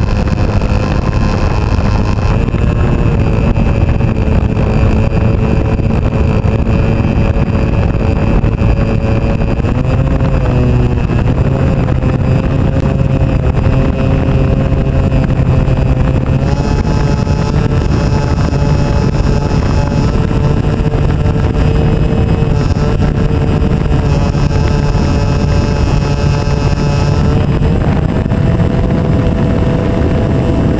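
Kadet Senior RC model airplane's engine running close to the nose camera as the plane rolls on grass. Its steady note dips briefly, then steps up and down a few times as the throttle is moved.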